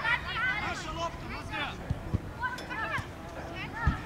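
Voices calling and shouting across a youth football pitch during play, with a couple of short dull thumps about two seconds in.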